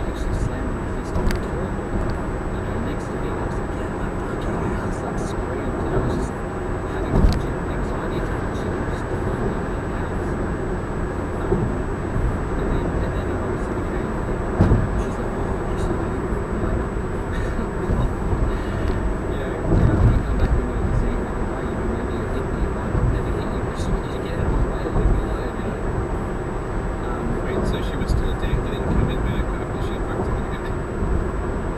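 Steady road and tyre noise heard inside a car cabin at highway speed, a low rumble with a few louder thumps about a quarter, half and two-thirds of the way through, and a faint thin high whine throughout.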